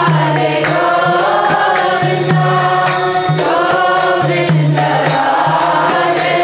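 Voices chanting a devotional mantra together in a melodic group chant, kept on a steady beat by percussion strokes, with a recurring low held tone underneath.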